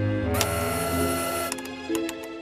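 Cartoon sound effect of a test-tube lab machine switching on: a low hum, then a loud mechanical whir from about a third of a second in that cuts off suddenly around a second and a half, followed by a couple of clicks. Background music plays throughout.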